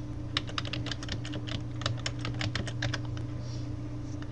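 Typing on a computer keyboard: a quick run of about twenty keystrokes that stops about three seconds in, over a steady low hum.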